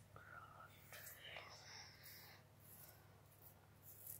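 Faint whispering voice for the first two seconds or so, then near silence.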